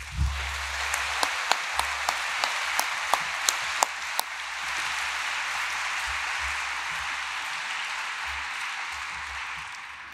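Audience applauding, with a few sharper, closer single claps standing out at about three a second over the first four seconds; the applause fades a little near the end.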